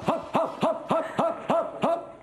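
A man's voice giving a quick series of short rising whoops, about seven of them at roughly three a second, each sliding up in pitch.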